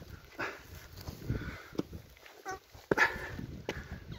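Footsteps and rustling on rock and dry grass as a walker moves, with light wind. About two and a half seconds in comes a brief, faint animal call.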